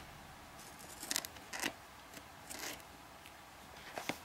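Scissors making a few short snips as they trim excess double-sided tape off a sheet of craft foam, with pauses between the cuts.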